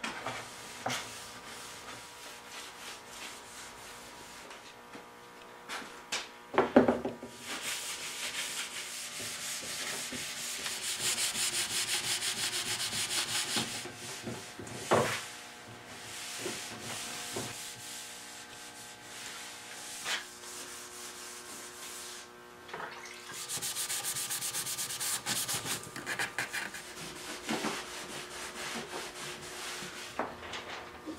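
Cloth rag scrubbing a maple harpsichord board with a wash of hot water, TSP and bleach, in stretches of quick back-and-forth rubbing strokes. There are two sharp knocks, about 7 and 15 seconds in.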